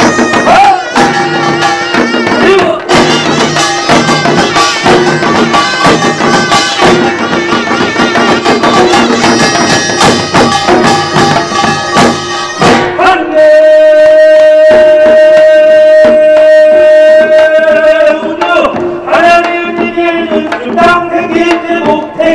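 Korean pungmul percussion ensemble of buk barrel drums and sogo hand drums playing a fast, dense rhythm. About halfway through the drumming thins and a single long note is held steady for around five seconds before the fuller playing comes back.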